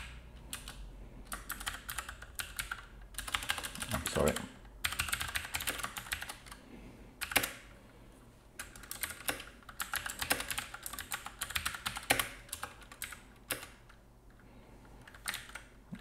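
Typing on a computer keyboard: runs of quick keystrokes broken by short pauses.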